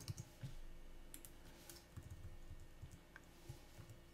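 Faint computer keyboard taps and mouse clicks, a few scattered strokes over a low steady room hum.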